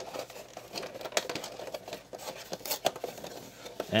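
Cardboard box being handled and torn a little further: irregular crackles, scrapes and rustles of paperboard.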